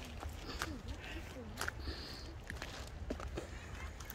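Footsteps and scattered small snaps in riverside undergrowth, with faint voices in the background and a low rumble underneath.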